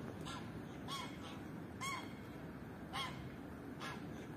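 A bird gives five short, harsh calls about a second apart, each rising and falling in pitch, over a steady low outdoor background rumble.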